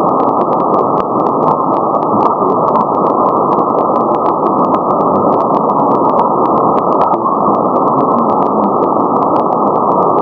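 Shortwave receiver's audio on 6180 kHz: a loud, steady hiss of band noise cut off above about 1 kHz by the receiver's narrow filter, with a rapid, irregular stream of sharp clicks from static or interference. No clear station signal stands out of the noise.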